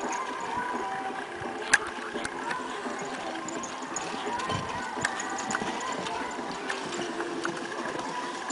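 Hoofbeats of a pony pulling a driving carriage at speed on an arena surface, with scattered clicks and one sharp knock about two seconds in, over a distant voice in the background.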